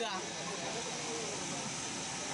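Steady hiss under the faint, indistinct chatter of a crowd of people.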